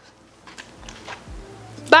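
Faint clicks and soft knocks of a plastic straw and a drinking glass being handled while someone sips through the straw.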